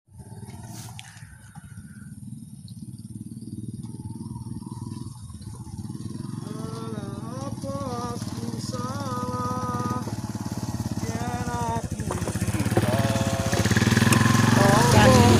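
Underbone motorcycle engine running as the bike rides closer, growing steadily louder.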